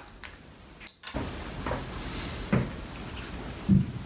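Quiet room tone with a click, then after a cut a steady hiss with a few soft knocks and handling sounds from a hand-cranked vertical sausage stuffer as it fills a casing that is coiled on a stone countertop; two of the knocks come about a second apart near the end.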